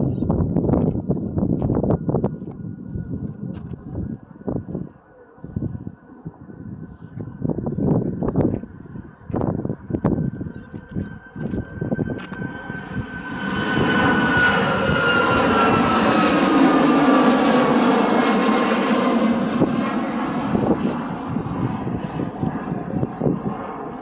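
Boeing 737 jet taking off and climbing past: the engine roar swells about halfway through, loudest for several seconds, then eases, with a high engine whine sliding down in pitch as the airliner goes by. Irregular thumps and buffeting on the microphone in the first half, while the jet is still distant on its takeoff roll.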